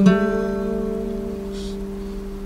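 Acoustic guitar struck once at the start and left to ring, the sound fading slowly away.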